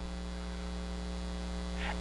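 Steady electrical mains hum with a ladder of evenly spaced overtones, picked up by the sound and recording system.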